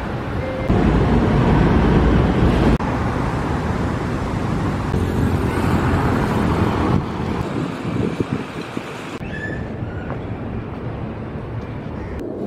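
Outdoor city street noise, mostly road traffic, heard as a steady rush. It comes in several short clips that change abruptly from one to the next.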